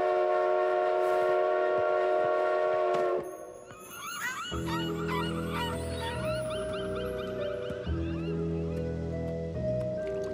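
A train whistle sounding one steady, many-toned blast for about three seconds, then cutting off. Then seagulls calling repeatedly over gentle music.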